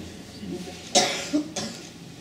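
A person coughing: one sharp cough about a second in, followed quickly by two shorter ones.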